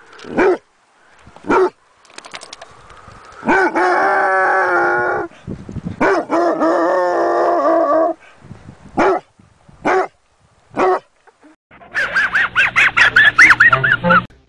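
Small canids barking sharply now and then, with two longer wavering yelping calls in between. Near the end comes a fast, wheezy snickering laugh, the cartoon dog Muttley's trademark chuckle.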